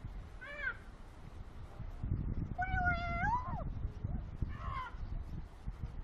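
Female Eclectus parrot calling three times: a short arched call, then a longer held call that bends up and drops off at its end about halfway through, then another short call.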